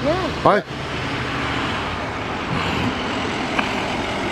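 A road vehicle driving by close on the street, a steady engine and tyre noise that sets in about a second in and holds level.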